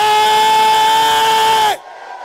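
A man's voice, amplified through a microphone, holds one long loud note at the end of a shouted word and cuts off abruptly near the end.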